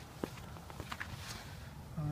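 A few faint footsteps on snowy pavement, over a low steady background rumble.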